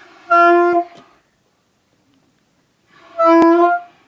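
A saxophone plays two short notes at the same pitch, each about half a second long, with a gap of about two seconds between them.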